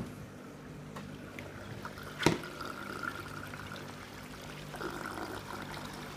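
Water trickling and pouring inside a DIY barrel aquarium filter packed with K1 moving-bed media, over a steady low hum. A single sharp knock comes a little over two seconds in.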